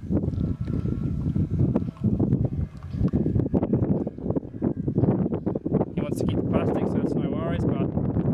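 Wind rumbling on the microphone, with small clicks from handling. An indistinct voice comes in near the end.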